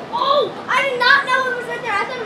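A child's high-pitched voice among children playing.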